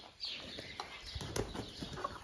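Faint scattered taps and rustles of Cornish broiler chickens moving and pecking about in straw bedding.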